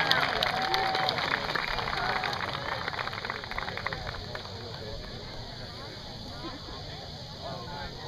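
Spectators clapping for an announced placing. The applause thins out over the first few seconds into low crowd chatter.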